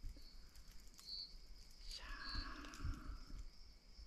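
Night insects chirping: a steady high trill with a few short, louder chirps, and a soft rustle about halfway through.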